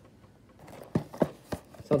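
Small cardboard jigsaw-puzzle boxes handled and turned over in the hands: a faint rustle with three light knocks in the second half.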